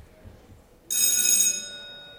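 A bell rings suddenly about a second in, loud and bright for about half a second, then its tone dies away over the next second.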